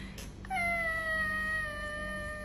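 A cat giving one long meow that starts about half a second in and holds a high, nearly steady pitch that slowly sags.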